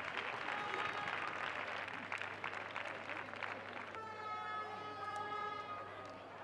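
Scattered applause and indistinct voices from a small football crowd at the end of a match. About four seconds in, a steady pitched tone holds for about two seconds over the clapping.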